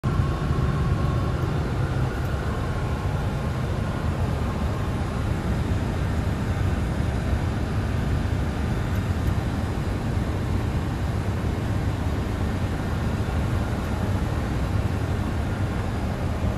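Steady low rumble inside a Boeing 747-400 freighter's flight deck on approach: engine and airflow noise heard in the cockpit.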